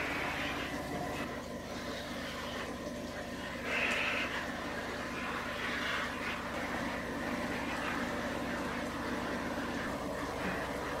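Handheld shower head spraying water onto houseplant leaves in a bathtub: a steady hiss of running water, over a steady low hum.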